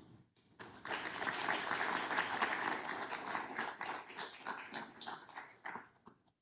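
Audience applauding, starting about half a second in and thinning to scattered claps near the end.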